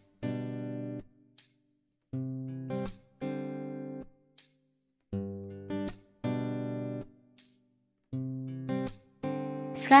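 Background music: acoustic guitar chords played in short phrases of about a second each, separated by brief silences.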